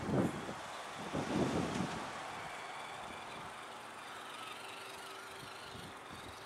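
Gusts of wind buffeting the microphone in the first two seconds, then the faint wavering whine of an Axial RC Jeep Cherokee truck's electric motor as it drives across snow.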